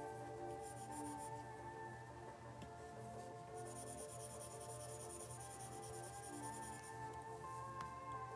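Background music with steady held tones, over the scratch of a stylus drawing strokes across an iPad screen, in two spells, the longer one in the second half.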